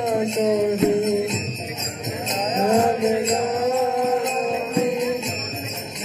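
Devotional kirtan: a voice singing a chant melody over steadily jingling small hand cymbals, with occasional drum strokes.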